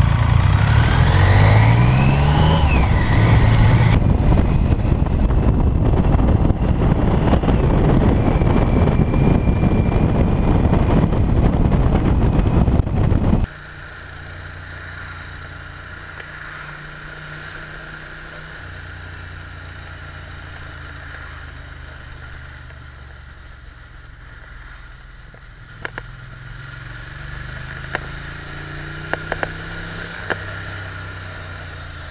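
BMW K75 three-cylinder engine pulling away, its pitch climbing and dropping at a gear change, then loud wind and engine noise at speed. About halfway through it cuts suddenly to a much quieter, steady engine hum from a Ducati Monster 696 cruising, with a few faint clicks near the end.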